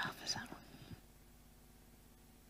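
A person whispering for about the first second, then faint room tone with a low steady hum.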